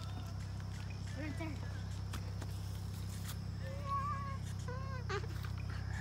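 Steady high-pitched trill of insects, with faint distant voices calling now and then over it.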